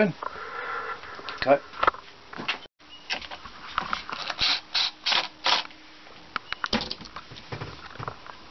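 Cordless drill-driver worked on the screws of a wooden mounting board for battery cutoff switches, a faint steady motor hum under several short noisy bursts and clicks. The sound drops out briefly just under three seconds in.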